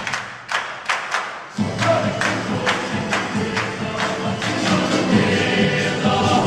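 Performers clapping their hands in a quick, steady rhythm, heard almost alone for the first second and a half. Then the choir and folk band come back in over the continuing claps.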